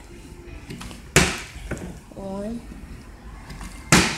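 A partly filled plastic water bottle landing on a tile floor after being flipped, twice: a sharp smack about a second in, and another right at the end. The landings count as successful flips.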